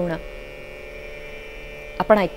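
A steady hum made of several held tones.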